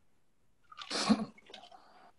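A short, breathy burst of a person's voice about a second in, followed by faint scraps of sound.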